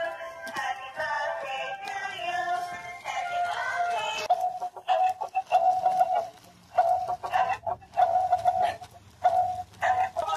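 Dancing cactus toy playing an electronic song through its small speaker: a sung melody for the first few seconds, then a string of short, repeated high notes with brief pauses between them.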